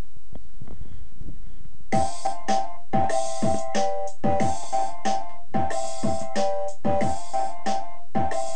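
A hip-hop beat programmed in FL Studio's step sequencer starts looping about two seconds in: deep kicks that drop in pitch, hi-hat and cymbal hits, and a sampled melody chopped with Fruity Slicer. Before it starts there are a few soft low thumps.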